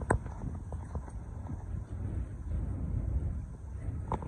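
Wind rumbling on the microphone, with a sharp knock at the start and a few lighter, irregular footsteps on a metal-grated gangway.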